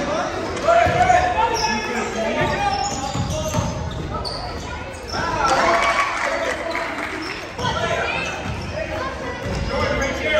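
A basketball bouncing on a hardwood gym floor during live play, with players and spectators calling out over it in the gymnasium.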